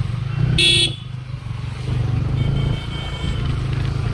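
KTM RC 200 single-cylinder engine running steadily on the move, with a short horn beep about half a second in.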